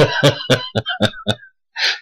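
A man laughing: a quick run of short breathy ha's that fades away, then a sharp breath in near the end.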